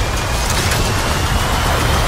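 Aerial-chase sound effects: a dense, loud rushing roar over deep rumble, with a faint whine slowly rising in pitch.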